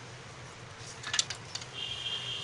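A few faint, light clicks just after a second in as salt is added from a spoon to crumbled boiled potato in a plastic bowl, over a low steady hum. A steady high-pitched tone begins near the end.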